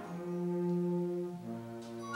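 Concert band playing a quiet, low held chord that moves to a new chord about one and a half seconds in.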